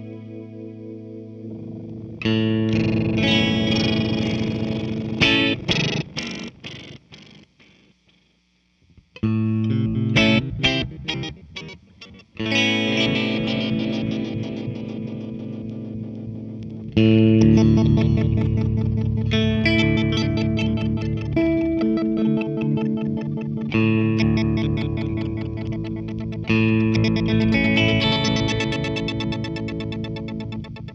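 Electric guitar chords played through a Meris Polymoon delay and modulation pedal, its delay lines modulated so the repeats waver in pitch. Each strum rings on in a trail of fast echoes. The sound dies away almost to silence about eight seconds in before new chords are struck, and it fades near the end.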